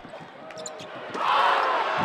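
Basketball game sound in a gym: a ball bouncing with short squeaks and knocks, then loud crowd noise of many voices breaks out suddenly a little over a second in.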